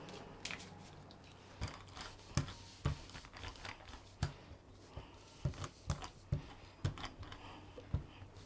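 Wide brush spreading acrylic paint across a gel printing plate in quick strokes: scratchy brushing with irregular sharp clicks and taps as the brush strikes the plate, starting about half a second in.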